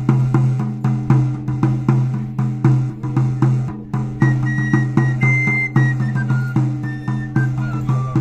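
Pipe and tabor, the Salamanca gaita charra and tamboril played together by one musician, playing a folk dance tune. The drum keeps a steady beat of about three strokes a second, and the pipe's high melody comes in about halfway through in short descending runs.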